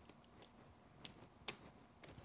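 Near silence with two faint soft taps about a second in, a sponge dabbing ink onto card.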